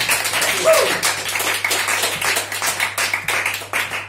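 A small audience applauding as a song ends, with dense hand clapping and a short vocal whoop about a second in.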